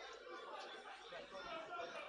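Faint chatter of several voices: a congregation murmuring while the preacher is silent.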